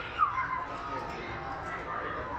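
Children's voices and chatter in an indoor play area. About a quarter-second in, a brief high voice rises above the rest and falls in pitch.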